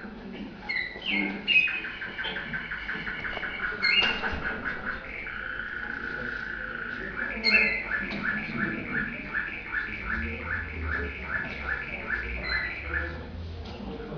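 Domestic canary singing contest song, heard played back through a TV speaker: a fast rolling trill of repeated notes, a held whistled note in the middle, then a slower run of repeated notes, about three a second, in the second half.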